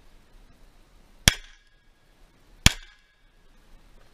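Two pistol shots about a second and a half apart, each sharp and loud with a brief ringing tail.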